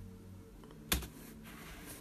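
A single sharp click of a computer key about a second in, over a faint steady low hum.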